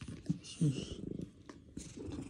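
A cat purring while being stroked, low and steady, with a breathy hiss. The cat's nose and throat are still affected by an illness it is recovering from.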